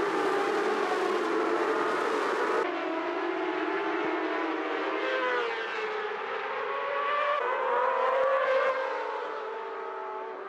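A field of supersport racing motorcycles at full throttle: many engines revving together as the pack pulls away from the start, then bikes accelerating past with engine notes rising and falling in pitch.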